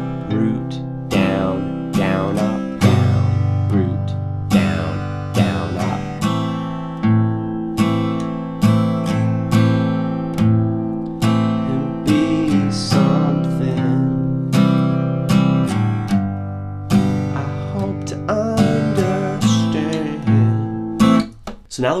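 Steel-string acoustic guitar strummed through a C, G, A minor, A minor 7 chord progression in a down, root, down, down, up pattern. The 'root' strokes are low strums that catch only the bass strings.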